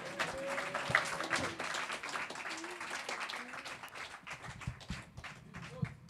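Small audience applauding after a song, the clapping thinning out and fading away, with a few faint voices among it.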